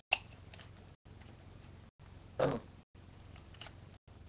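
Rubik's cube being turned by hand: scattered sharp plastic clicks of the layers snapping round, the loudest and fullest one about halfway through. The recording cuts out briefly about once a second.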